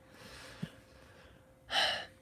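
A man's quick, sharp intake of breath near the end, drawn in just before he speaks again; earlier a faint breathy hiss and a small click.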